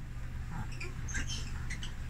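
Lovebirds giving scattered faint, short chirps and squeaks over a low steady hum.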